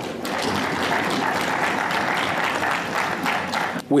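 Audience applauding, a steady patter of many hands clapping that stops near the end.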